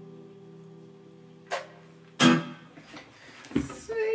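The final chord of an acoustic guitar and piano rings on and fades. A click comes about a second and a half in, then a loud sharp knock a little after two seconds, followed by scattered knocks and rustles from the instruments being handled.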